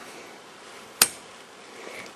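A single sharp click about a second in, as a tent pole clip snaps into place, over a faint steady background hiss.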